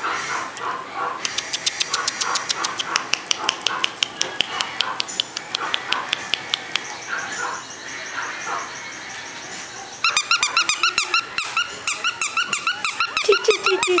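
Shih Tzu puppy yipping in the last few seconds: a fast string of short, high-pitched yips. Earlier, a quick run of sharp clicks.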